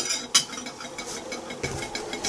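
Two short, sharp handling knocks, one at the very start and one about a third of a second later, then quiet, steady room noise.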